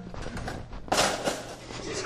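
Low room commotion from a group of people, with faint background voices and a short burst of rustling or handling noise about a second in.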